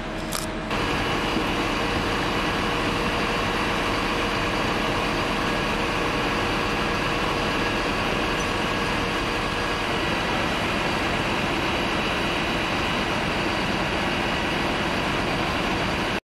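Diesel engine of a fire brigade aerial platform truck running steadily to power the boom. It grows louder about a second in and then holds level.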